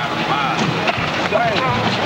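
Men's voices shouting and hollering through a camcorder's built-in microphone, over a dense, rough noise.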